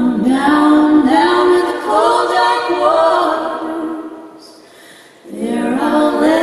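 Female vocal trio singing a cappella in close harmony, with long held notes. The voices fade out about four seconds in and come back in together about a second later.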